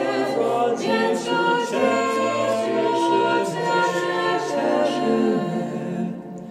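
Small mixed choir of men's and women's voices singing a cappella in harmony, moving through held chords.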